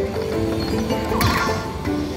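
Aristocrat Lightning Link Tiki Fire slot machine playing its free-spins bonus music of steady, electronic-sounding notes while the reels spin. About a second in, a game sound effect adds a burst of noise with a wavering tone.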